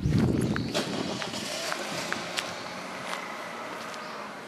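Footsteps of someone walking on a paved path, with scattered light clicks. A low rumble on the camera microphone comes in the first second.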